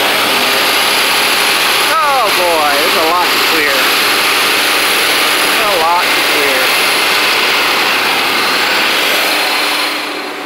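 Tractor engine running steadily, with a man's voice heard briefly about two and six seconds in. The engine sound eases off near the end.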